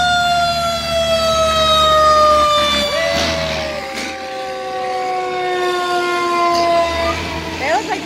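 Fire engine sirens sounding as the trucks pass close by, one long wail falling slowly in pitch with a second siren tone coming in about three seconds in, over the low rumble of the trucks' engines. The sirens mark the fire engines heading out on an emergency fire call.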